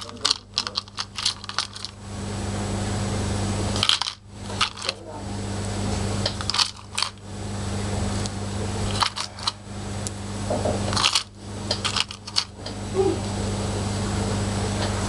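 Small polymer clay charms with metal jump rings clicking and clinking against each other in a palm as they are handled, in several short bursts of clicks over a steady low hum.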